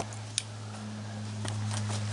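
A steady low hum with a few faint clicks.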